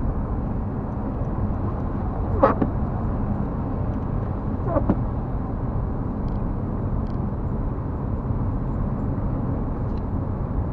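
Steady road and engine noise of a moving car, heard inside the cabin. Two short knocks come about two seconds apart, early in the stretch.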